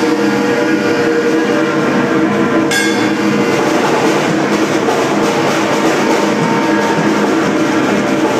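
Live rock band in a sustained droning passage: held electric guitar tones ringing steadily, with one sharp hit nearly three seconds in.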